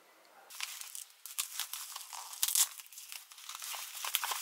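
Plastic bubble wrap crinkling and tearing as it is pulled open by hand. A quick run of crackles starts about half a second in and is loudest a little past the middle.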